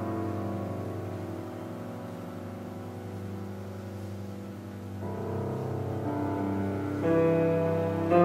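Chamber ensemble playing contemporary classical music: piano with bowed cello and double bass holding sustained notes that slowly fade, then new held notes come in about five seconds in and swell louder near the end.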